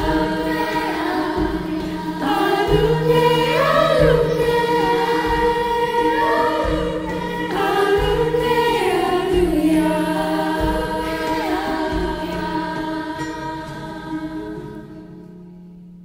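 Girls' chorus singing the final phrase of a slow Swahili lullaby in harmony over guitar and low percussion. The voices die away about a second before the end, leaving a fading low note.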